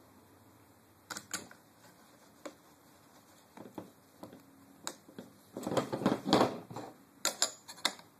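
Parts of an airsoft MP7 and its add-on rail adapter being handled and fitted by gloved hands: scattered sharp clicks and knocks of plastic and metal, a second or so of rubbing and scraping a little past halfway, and a quick run of clicks near the end.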